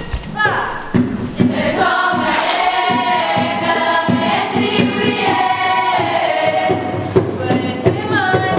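A large group singing a Māori waiata together in chorus, with a steady beat underneath. A single voice's falling call opens it, and the group comes in about a second in.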